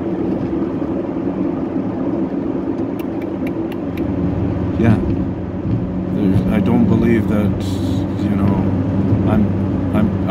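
Car running on the road, heard from inside the cabin: a steady engine and road drone, with a few light clicks about three seconds in.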